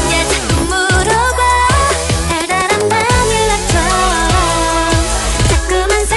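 K-pop dance-pop song with a wavering melodic lead over a steady deep bass and a regular electronic kick drum, about two beats a second.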